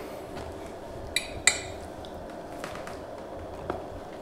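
Cutlery clinking against a plate and a plastic food container as food is served: two sharp clicks a little after a second in, and a fainter one near the end.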